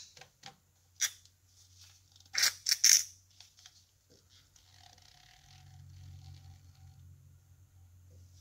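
Plastic syringe knocking and scraping against the rim of a small tin of finishing oil while oil is drawn up: a couple of light clicks, then a short sharp clatter about two and a half seconds in, followed by faint handling noise.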